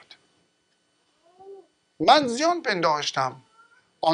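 A man's voice: after about two seconds of near silence, a loud utterance with a swooping, wavering pitch lasting about a second and a half.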